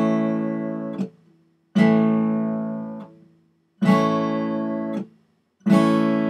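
Acoustic guitar strumming an open A chord on the upper five strings, with the low E string left unplayed. It is strummed four times, about two seconds apart, and each chord rings for about a second before it is cut short.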